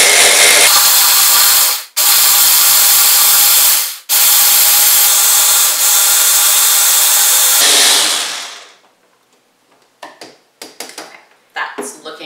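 Immersion hand blender motor running in three bursts of about two, two and four seconds, with short stops between, blending frozen berries with a little liquid. It winds down about eight seconds in, followed by a few light clicks.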